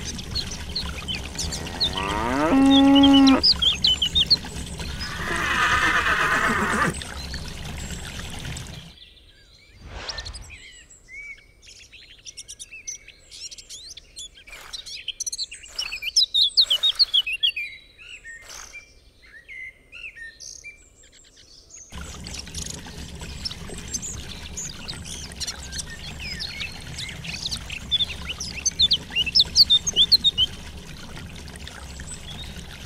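Water pouring steadily into a small plastic basin, with birds chirping throughout and a cow mooing about two seconds in, followed by a second drawn-out animal call a few seconds later. The pouring stops about nine seconds in, leaving birdsong and a few light knocks, and starts again past the twenty-second mark.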